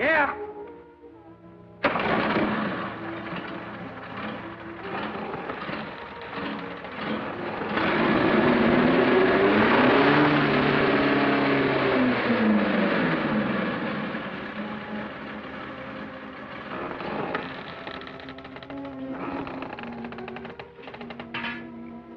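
Film soundtrack music with a motorcycle engine starting suddenly about two seconds in. The engine's pitch rises and falls as it revs in the middle, the loudest part.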